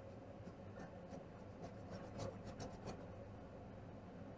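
Faint scratching of coloring strokes on paper, with a quick run of several short strokes about two seconds in.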